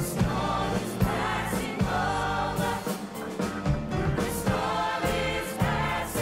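Music: a choir singing over a band accompaniment with bass and a steady beat.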